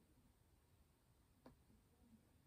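Near silence: room tone, with one faint click about a second and a half in.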